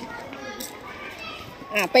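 Young children's voices at play, faint and scattered, with a woman's voice starting loudly close by near the end.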